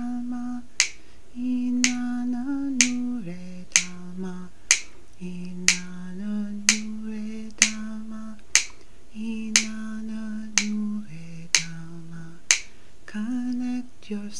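Finger snaps keeping a slow beat, about one a second, over a low, slow wordless vocal melody of held notes that step and slide between pitches.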